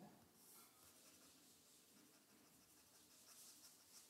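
Near silence, with faint scratching of a stylus on a pen tablet as on-screen writing is erased.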